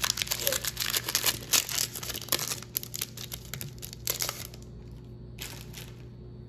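Foil trading-card pack being torn open and crinkled by hand, a dense crackling for about four and a half seconds, then one short rustle near the end.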